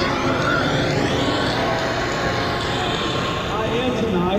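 Indistinct voices in the background over a steady wash of room noise, with no one voice standing out.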